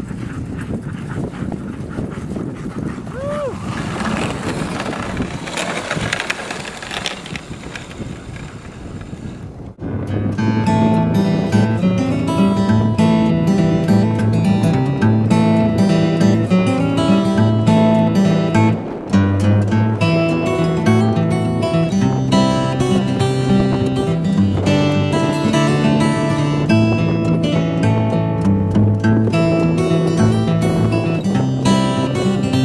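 Steady rushing noise of wind and a dog sled moving over snow for about the first ten seconds, with a brief rising squeal about three seconds in. Then a sudden cut to acoustic guitar music, which fills the rest.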